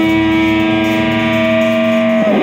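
Distorted electric guitar holding one long sustained note at a steady pitch during a blues solo, with the band playing quietly underneath.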